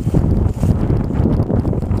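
Wind buffeting the microphone: an uneven, low rumbling noise.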